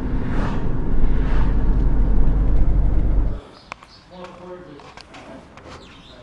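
Engine and road noise inside a Ford Mustang's cabin while driving: a loud, steady low drone. It cuts off suddenly about three and a half seconds in, giving way to much quieter room tone with a few faint clicks.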